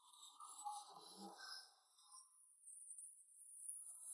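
Near silence: faint background murmur with no distinct cleaver chops.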